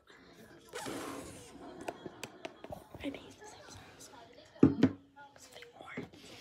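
A girl's soft whispering and breathy murmurs, with one short, louder spoken word or two a little before the end.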